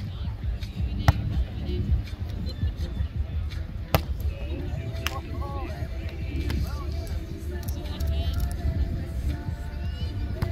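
A volleyball struck by hand during a beach volleyball rally: two sharp hits, about a second in and about four seconds in, with fainter contacts between, over background music and voices.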